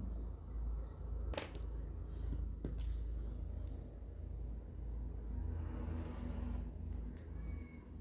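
Faint desk-work sounds of paper craft: a pencil sketching on a small piece of paper, then scissors being handled, with a few light, sharp clicks over a low steady hum.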